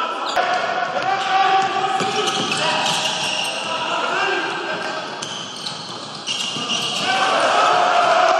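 Basketball game sound on a hardwood court: a ball bouncing, with people's voices shouting.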